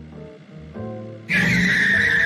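Background music, then, well past halfway, a sudden loud car tyre squeal as of a car skidding, one wavering high screech.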